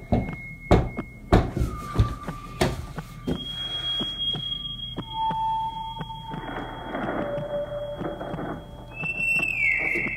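About five hard knocks on a wooden door in the first three seconds, then long, thin, high-pitched tones that hold steady or slide downward, over a steady low hum.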